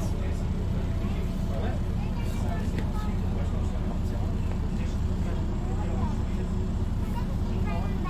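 Steady low engine and road rumble of a bus, heard from inside the passenger cabin, with faint voices of other people in the background.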